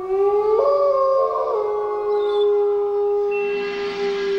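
Canine howling: one long, steady howl, with a second, higher howl overlapping it briefly about half a second in.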